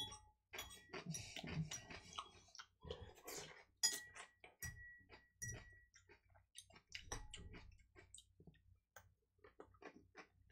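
Faint chewing and crunching of salad, an irregular run of short crisp clicks, with a few brief ringing clinks about four to six seconds in.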